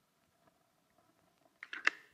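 A dripless exterior caulking gun clicking about four times in quick succession near the end. The clicks come from the trigger and plunger rod as the bead is finished and the gun comes off the work. Before them there is only faint handling.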